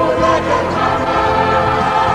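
A mixed church choir of women's and men's voices singing an Arabic hymn in several parts, holding sustained chords.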